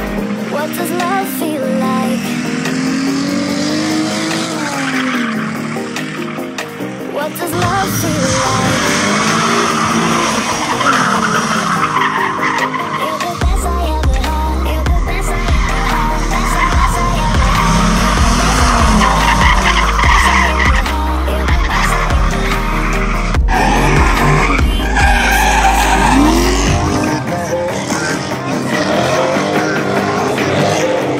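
Cars drifting: engines revving up and down while the rear tyres squeal and skid across asphalt, with music playing over it and a heavy bass beat through the middle part.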